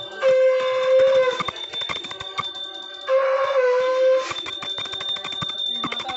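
A conch shell (shankh) blown in two long steady blasts, one near the start and one about three seconds in, each bending slightly at its end, over the rapid ringing of a small hand-held puja bell.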